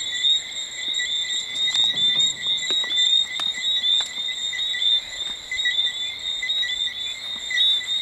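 Evening chorus of many small calling animals: dense, rapidly repeated high chirps that overlap into one steady sound, with a few faint clicks.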